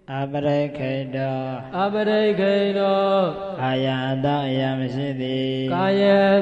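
Pali text chanted aloud in a sing-song monastic recitation, the voice holding long steady notes that fall away at the end of each phrase. It starts right after a brief pause, with short breaths between phrases.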